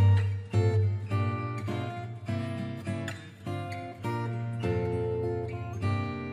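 Background music: strummed acoustic guitar playing a steady chord pattern.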